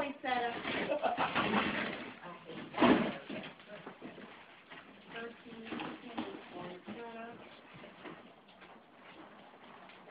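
Quiet, indistinct talking and murmuring from several people in a room, with a brief louder noisy burst about three seconds in, fading to near quiet towards the end.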